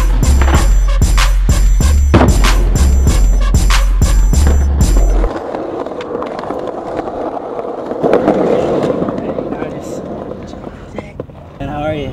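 Music with a heavy bass beat, which cuts off about five seconds in; then a skateboard rolling on concrete, the wheel noise swelling about eight seconds in and fading away.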